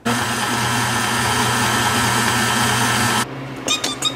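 KitchenAid stand mixer's motor running steadily as the beater turns through flour and egg for pasta dough, switching on suddenly and cutting off about three-quarters of the way through, followed by a few light clinks.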